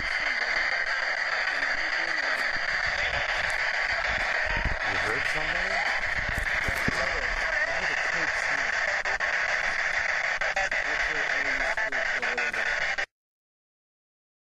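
SB7 spirit box sweeping through radio stations, heard played back from a voice recorder: a steady hiss of static broken by choppy scraps of radio voices and small clicks. It cuts off suddenly about 13 seconds in.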